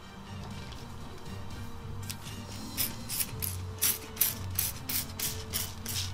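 Hand trigger spray bottle being pumped, each squeeze a short spritz of spray with the click of the trigger. The pumping starts about two seconds in and repeats quickly, about three squirts a second.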